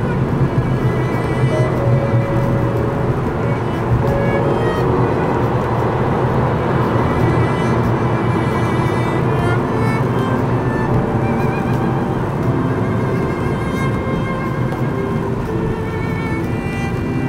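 Background music of held, slow-moving notes, added over the recording, with the steady low road and engine noise of the car underneath.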